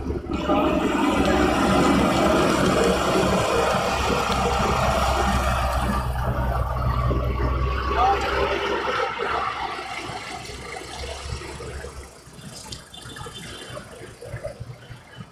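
Diesel engines of heavy construction machines, a wheeled excavator and a wheel loader, running as they drive along the road, a steady low rumble that fades about two-thirds of the way through. Voices of people nearby are mixed in.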